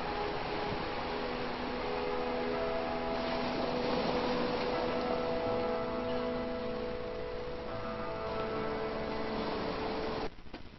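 Playback of an edited video sequence: slow music with long held notes that change a few times, over a steady wash of sea and surf noise.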